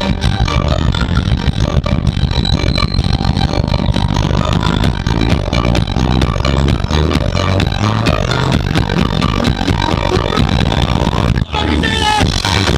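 A live band with electric mandolin and drum kit plays a fast, steady-beat number, with a strong low end. The music drops out briefly just before the end.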